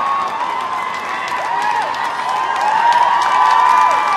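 Crowd cheering and shouting, swelling to its loudest about three seconds in, with rapid clicks running through it.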